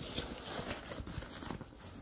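Faint rustling and soft, irregular taps of a hand rummaging inside a leather travel bag.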